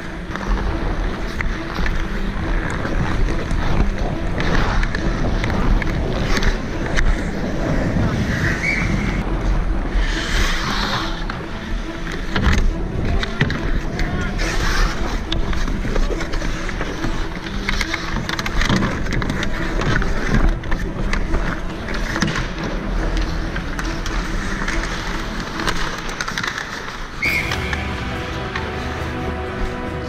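Ice skate blades carving and scraping on rink ice in a continuous rushing noise, close to a helmet-mounted camera's microphone, with occasional sharp clacks of hockey sticks and puck.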